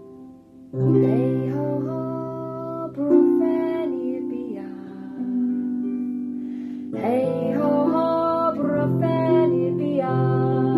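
A harp plays plucked chords under a woman singing a slow Welsh cattle-calling song. The music starts about a second in, after a brief hush, and a new phrase enters around seven seconds.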